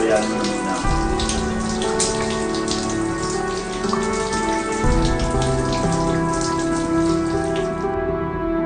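Shower water spraying and splashing down, heard as a dense patter that stops just before the end, over a soft sustained music score.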